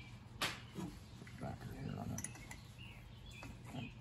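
Small metal clicks and clinks of an open-end wrench working on the jet ski carburetor's fittings, with one sharp click about half a second in and a few lighter ticks around the middle.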